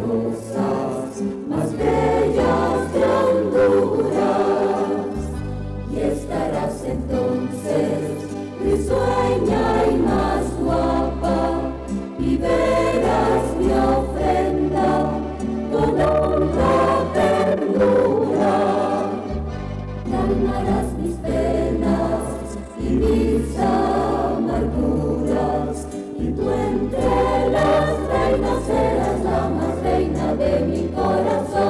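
Church choir singing a Catholic Marian hymn, with sustained low bass notes beneath the voices that change every second or two.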